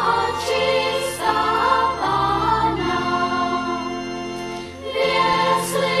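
A Christmas carol sung by a group of voices over steady low accompaniment; the singing thins to a long held chord about halfway through, then comes back fuller near the end.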